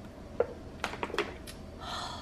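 A woman drinking from a plastic water bottle: a few small clicks as she swallows, then a breathy exhale near the end as she comes off the bottle.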